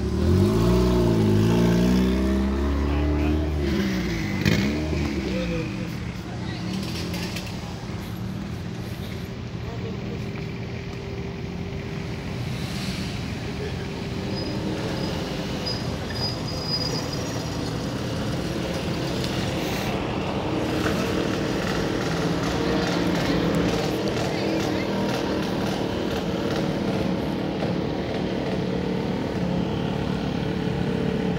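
A car's engine passing close by, its pitch rising and falling with revving over the first few seconds. It gives way to a steady background of other engines running and voices around the drag-racing pits.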